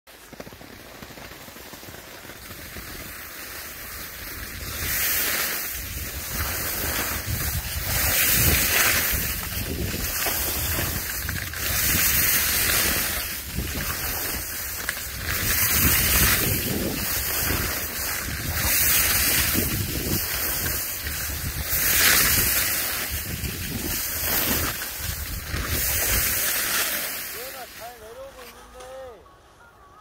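Skis scraping over packed snow in a run of turns, the sound swelling and falling about every two seconds, with wind rumbling on the microphone. It fades out near the end as the skier slows to a stop.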